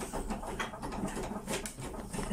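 A CPR training manikin's chest clicking under repeated chest compressions: a run of short clicks over a low room hum.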